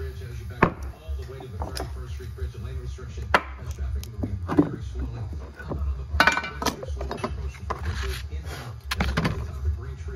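A steady low rumble with sharp knocks and clicks scattered through it, roughly one a second.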